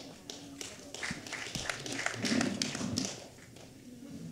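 Brief scattered applause from an audience: a few people clapping unevenly. It builds over the first two seconds and dies away after about three.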